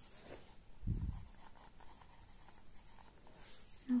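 Pencil writing a word by hand on a workbook page: faint scratching of graphite on paper, with a soft low thump about a second in.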